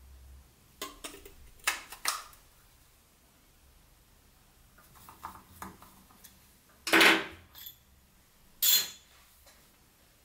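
Scattered clinks and knocks of small metal parts and hand tools on a metal workbench: ball bearings being handled, and a screwdriver working at a scooter wheel's hub. A few sharp clicks come in the first two seconds, and two louder knocks come in the second half.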